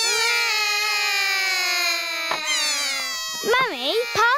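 Cartoon children's voices drawing out one long, slightly falling call for about three seconds, a stretched-out "Mummy"; normal speech follows near the end.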